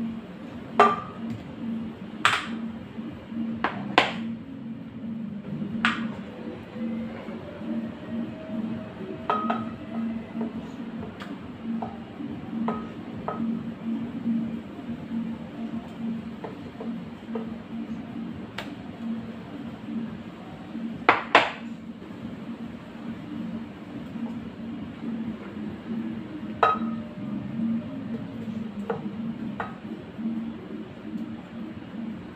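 Pieces of ripe plantain dropped by hand into an empty glass blender jar, giving scattered knocks and clinks against the glass, the loudest a quick double knock about two-thirds of the way through. A steady low hum runs underneath.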